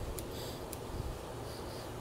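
Quiet room tone with two faint, short clicks about half a second apart.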